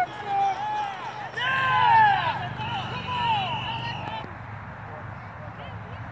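Shouting and cheering voices of coaches and spectators at a youth football game, several at once and loudest about two seconds in, with one voice holding a long call around the middle.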